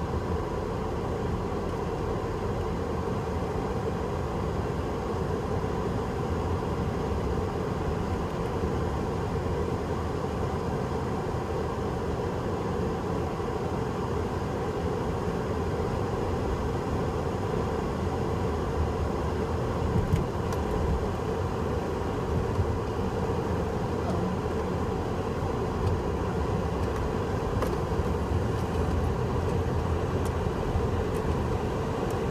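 Steady engine and road noise of a slowly driving car, heard from inside the cabin, with a few faint clicks in the second half.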